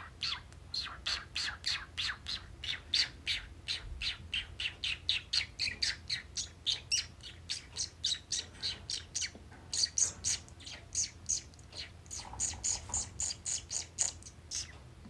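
A pet bird calling rapidly and continuously, about four short, sharp chirps a second, with the calls going higher in pitch in the last few seconds.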